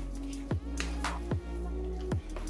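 Background electronic music with steady bass tones and a deep kick drum beating a little more than once a second.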